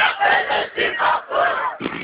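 Loud shouted voices, three or four long shouts, while the beat drops out.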